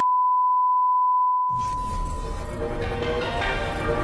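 A steady 1 kHz test-tone beep, the reference tone that goes with colour bars, held for about a second and a half. It gives way to music that starts about a second and a half in.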